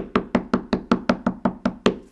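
Distress ink pad tapped rapidly and evenly against a rubber stamp to ink it, about five sharp knocks a second, each with a short hollow ring. The tapping stops right at the end.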